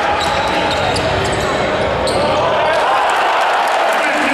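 Basketball arena din during live play: a steady mass of crowd voices, with the ball bouncing on the hardwood court.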